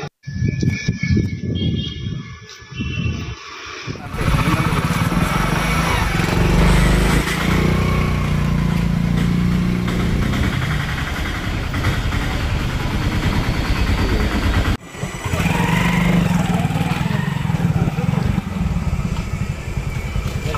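Street noise from outdoor field audio: a motor vehicle engine running close by, with voices in the background. It starts suddenly about four seconds in and cuts out briefly near fifteen seconds.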